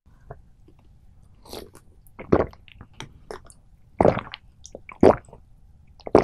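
Close-miked gulps of iced cola being swallowed from a glass: a few small mouth clicks, then three loud swallows roughly a second apart in the second half.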